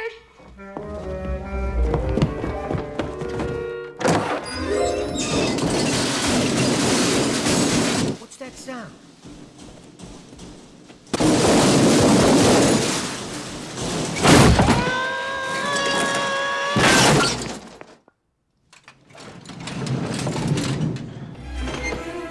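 Film soundtrack: a heavy metal Craftsman tool chest crashing down a staircase, with two long bouts of loud crashing and clattering, about four seconds in and again about eleven seconds in, over orchestral score.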